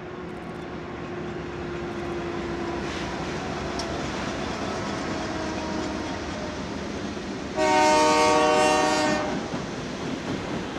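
A lash-up of BNSF GE Dash 9 diesel locomotives passing under power, their engine rumble building as they go by. About three-quarters of the way in, a locomotive air horn sounds one loud blast lasting about a second and a half.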